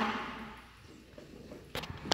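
A sudden noisy scrape or knock that fades over about a second, followed by a couple of sharp clicks near the end: handling noise at a grand piano and its bench.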